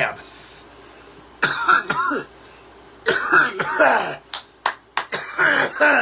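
A man coughing hard in repeated fits after inhaling a large cannabis dab. The coughs come in groups: a first fit about a second and a half in, a longer one mid-way, and a run of coughs near the end.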